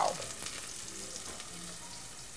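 Sliced onion and bell pepper frying in olive oil in a pot on a gas burner: a soft, steady sizzle, stirred with a utensil.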